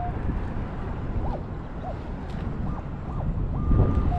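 Metal detector sounding on a buried target: several short tones that rise and fall, then a held steady higher tone near the end, as the coil sweeps over a target reading 30, which the detectorist takes as typical of a quarter. Steady wind rumble on the microphone underneath.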